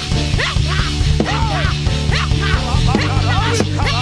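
Live gospel band playing an instrumental passage: drum kit and a steady low bass line, with a high lead instrument playing many short notes that bend quickly up and down in pitch.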